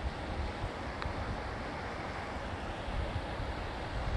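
A river rushing over rocks makes a steady, even rush of water, with wind rumbling unevenly on the microphone.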